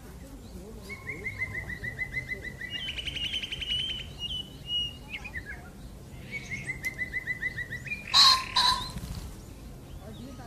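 Blackbird singing in runs of quickly repeated clear notes: one run about a second in that turns into a faster, higher trill, and a second run a few seconds later. A short, loud, harsh sound breaks in about eight seconds in.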